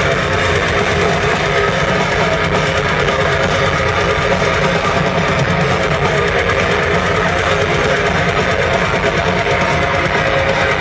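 Heavy metal band playing live, loud and unbroken: distorted electric guitars, bass and dense drumming, heard from within the crowd.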